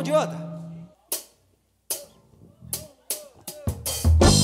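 The last held note of a forró song dies away in the first second, then single drum hits come about a second apart and speed up into a quick fill that counts the band into the next song.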